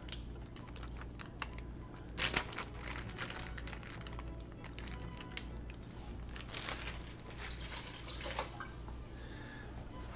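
Plastic zipper bag crinkling and a metal fork clicking and scraping against a baking tray as soft, wet steak pieces are lifted out and set down: a scatter of small clicks and rustles, loudest about two seconds in, over a low steady hum.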